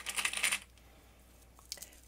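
Brief rustling and clicking of layered fabric and foam being handled and lined up by hand, then quiet with one faint click.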